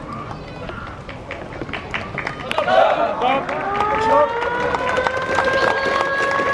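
A group of players shouting their greeting together about halfway through, then a game-end siren winding up and holding a steady tone. Scattered claps run throughout.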